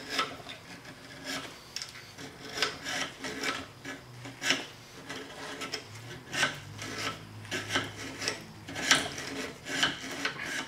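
Small hand file rasping back and forth in the slot of a mild steel expansion link held in a bench vise, a steady rhythm of about two strokes a second.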